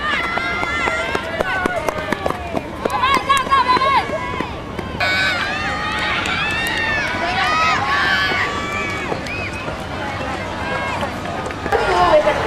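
Many high voices shouting and cheering at once, overlapping with no clear words. The sound changes abruptly about five seconds in.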